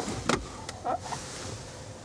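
Car glovebox being opened inside the cabin: a couple of sharp clicks from the latch, then a soft swish of the lid, with some handling noise.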